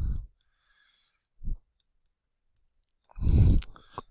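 Faint, scattered ticks of a digital pen tapping and moving on a screen while handwriting words, with a low thump about one and a half seconds in and a breath near the end.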